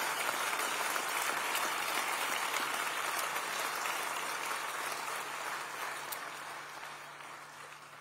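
Audience applauding, a steady patter of many hands clapping that slowly dies away over the last few seconds.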